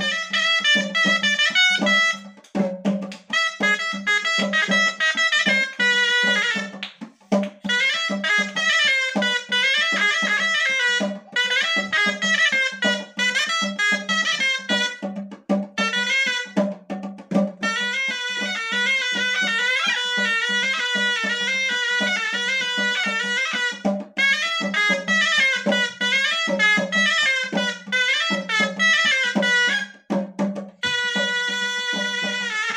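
Moroccan ghaita, a double-reed shawm, playing a fast, ornamented chaabi melody in long phrases with brief breaks for breath.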